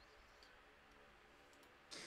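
Near silence: room tone with a couple of faint clicks, and a louder computer mouse click just before the end.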